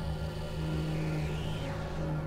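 Experimental electronic drone music from synthesizers: a steady low drone, with a faint high tone gliding upward about a second in.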